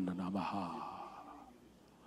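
A man's voice trailing off at the end of a phrase of praying in tongues into a handheld microphone, followed by a breathy exhale that fades away.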